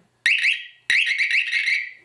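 Small 9-volt battery-powered siren sounding as its wire is touched to a light switch terminal: a warbling high tone that rises and falls several times a second, first in a short burst, then a longer one about a second in, each starting suddenly. The siren sounding shows the switch is closed in this position.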